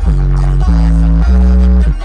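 Bass-heavy music played loud through a DD Audio 712 car subwoofer: three long bass notes, each sliding down briefly into a held pitch, stepping upward one after another.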